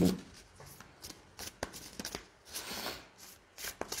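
A deck of cards being shuffled by hand with an overhand shuffle: soft, irregular rustling and light slaps as cards slide off the deck and drop onto the front of it.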